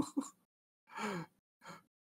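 A person's laugh trailing off, then a breathy, falling sigh about a second in and a short faint breath near the end.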